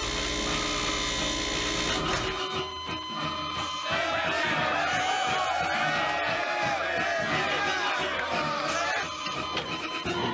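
Film soundtrack of an electroshock therapy scene. A harsh electrical buzz over a low hum lasts about the first two seconds, as the shock is given. From about four seconds in, a crowd of many voices whoops and shouts over an ongoing score.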